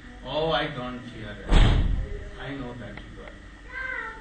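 Brief, indistinct voices in a room, with one short, loud thump about one and a half seconds in.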